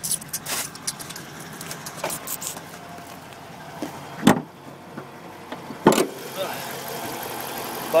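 A 2010 Dodge Challenger R/T's hood being released and raised: scattered clicks and rattles, then two sharp knocks about four and six seconds in, over a low steady hum.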